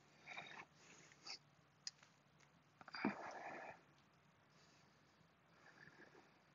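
Faint breathing of a person straining to hold a full wheel backbend: a few short breaths, the strongest about three seconds in.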